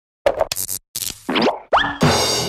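Cartoon sound effects for an animated logo sting: a quick run of short pops and blips, then two rising boing-like glides in the second half.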